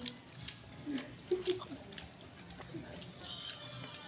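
Quiet close-up eating sounds: chewing on a mouthful of rice while fingers gather rice and greens on a paper wrapper, with scattered faint clicks and crinkles.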